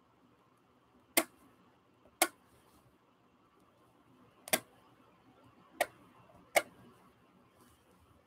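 Five sharp, irregularly spaced clicks as an X-Acto craft knife cuts away the waste around a rubber stamp carving block on a self-healing cutting mat, over quiet room hiss.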